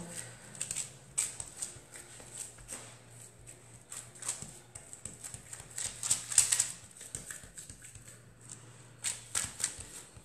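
Hands pressing and patting raw minced meat flat on oiled baking parchment: irregular soft squishes, pats and paper crackles, heaviest about six seconds in and again near the end, over a faint steady low hum.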